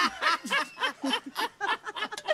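A group of men laughing together in short rhythmic bursts, about four a second.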